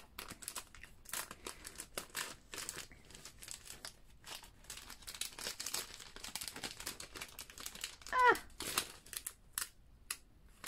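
Crinkling and rustling of vinyl stickers and clear plastic packaging being handled, in many short irregular strokes. About eight seconds in there is one brief, wavering squeak-like sound, the loudest moment.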